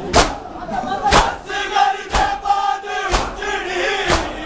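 A crowd of men chanting a noha in unison while beating their chests together in matam, the hand strikes landing in time about once a second.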